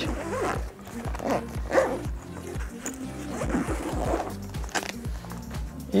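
Background music with a steady beat throughout, over the sound of a zipper being drawn shut around the lid of a Mystery MTH-242B soft thermoelectric cooler bag.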